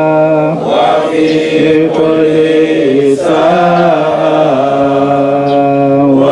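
A man chanting a Shia mourning lament for Imam Husayn, amplified through a handheld microphone and portable loudspeaker. He sings in long held, wavering notes, each phrase sliding into the next, with the pitch dipping lower in the middle and rising again near the end.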